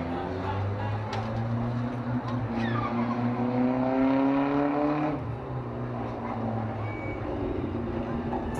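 A motor vehicle's engine running, its pitch climbing steadily for a few seconds as it picks up revs, then dropping away about five seconds in.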